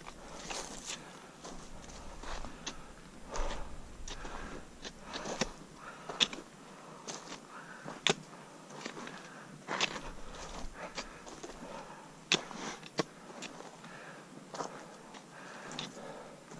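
Footsteps crunching over dry pine needles, leaf litter and rock, an uneven walking rhythm with sharp clicks and crunches every half second to a second.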